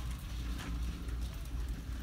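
Store aisle room tone: a steady low hum with faint scattered clicks and knocks.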